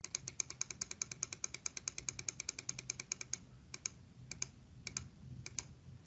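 Computer keyboard typing, faint: a quick run of key clicks, about ten a second, for the first three seconds, then four spaced pairs of clicks.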